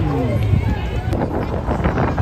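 Nearby spectators' voices over a steady low rumble, with a quick run of footfalls on the roadway in the second half.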